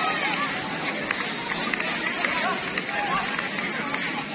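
Crowd of onlookers at a bull fight, a steady babble of voices with many short shouts and calls overlapping.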